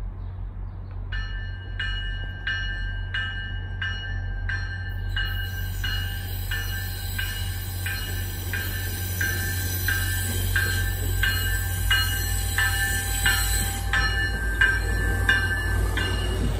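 MBTA commuter rail train pulling slowly into a station with its bell ringing in steady strikes, about one and a half a second, over a low rumble. A high-pitched wheel squeal joins from about five seconds in as the train comes alongside the platform.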